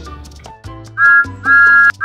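Thomas the Tank Engine's two-note steam whistle, added as a sound effect: a short toot about a second in, then a longer one, after quieter low tones.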